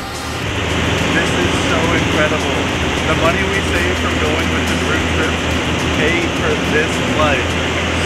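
Steady engine drone heard inside the cabin of a light aircraft in flight, with indistinct voices over it.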